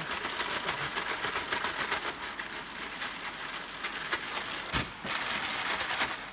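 Hands working a dry spice rub into a raw boneless lamb shoulder, a soft crackly rustle. About five seconds in there is a knock, then louder plastic crinkling as the meat goes into a zip-lock bag.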